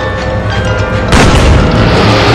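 Film soundtrack music with sustained tones, broken about a second in by a sudden loud boom that leaves the mix loud and dense.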